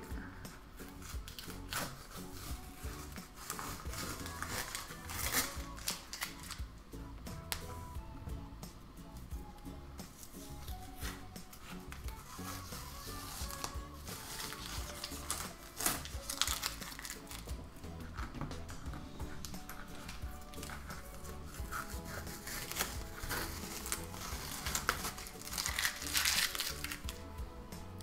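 Masking tape being peeled off the border of a drawing on paper, with intermittent crackling, tearing pulls and crumpling of the removed tape, over faint background music.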